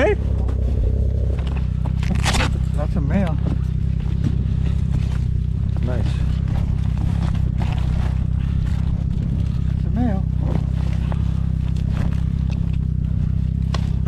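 A snowmobile engine idling steadily throughout. Over it come scraping and rustling as a plastic bag lashed to the tow sled is handled.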